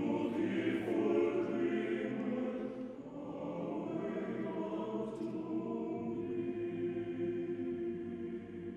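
Male-voice choir singing in harmony. A phrase swells at the start and a new phrase begins about three seconds in.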